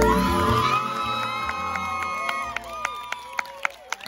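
The closing notes of a Tahitian song, ending about halfway through, with an audience cheering and whooping over it as the solo dance finishes; the cheering then dies down.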